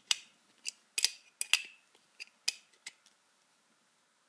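Sharp metallic clicks and clinks of an adjustable wrench and tongue-and-groove pliers gripping and turning a brass fitting in a black malleable iron tee, about a dozen at irregular intervals, stopping about three seconds in.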